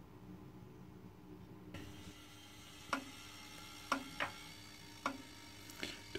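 Truma Trumatic S 3002 gas heater crackling faintly as its flame is turned down from full, with a few sharp ticks about a second apart in the second half over a faint hiss. The sign that the DIY thermostat has tricked the heater into lowering its flame.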